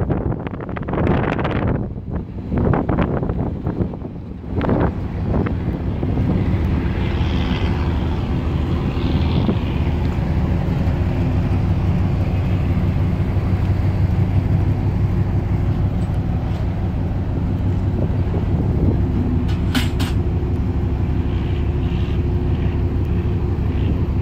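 A motor or engine running steadily with a low hum, after a few seconds of irregular knocks and rustling at the start.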